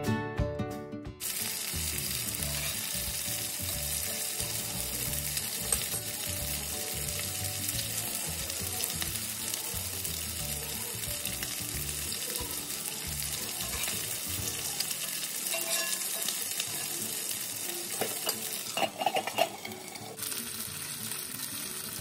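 Fish steaks shallow-frying in coconut oil in a cast iron skillet: a steady sizzle, with a few louder crackles near the end.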